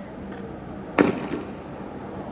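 A single sharp bang about a second in, a tear gas round being shot, followed by a brief echo.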